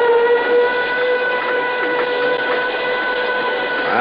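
Steam whistle sound effect blowing one long, steady note, the site whistle signalling that the payroll payoff is starting.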